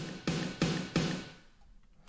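Big retrowave-style snare drum hits drenched in reverb: four strikes in about a second, then the reverb tail fades out.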